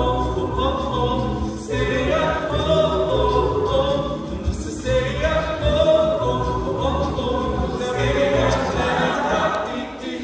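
A cappella group singing in close vocal harmony: several voice parts holding and shifting chords over a low bass part, with no instruments.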